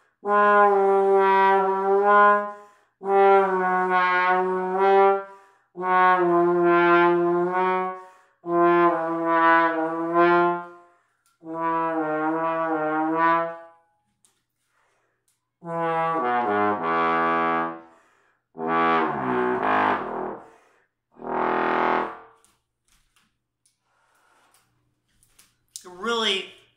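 Conn 60H single-valve bass trombone playing long held notes in a false-tone practice exercise: five sustained phrases, each a little lower in pitch, then three phrases stepping down into the very low register, the last reaching deep pedal notes.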